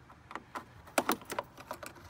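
Flat-blade screwdriver prying plastic retaining pins out of a car's radiator fan shroud: a run of sharp plastic clicks and taps, the loudest pair about a second in.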